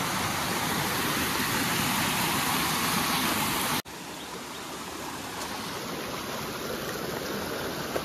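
Rocky hillside stream rushing and splashing over boulders: a steady rush of water. About four seconds in it drops abruptly to a quieter, more distant rush.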